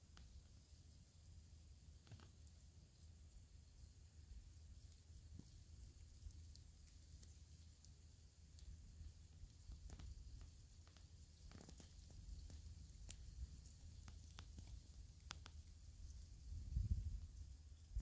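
Near silence: faint background with a low rumble and a few scattered faint clicks, and one low thump near the end.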